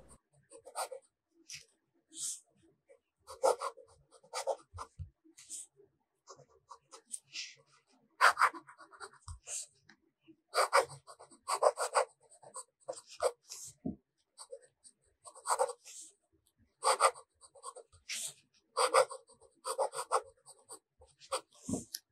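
Fountain pen nib writing cursive on Maruman Mnemosyne notebook paper: short, irregular scratching strokes in quick clusters with brief gaps between words. A couple of faint low knocks come partway through and at the very end.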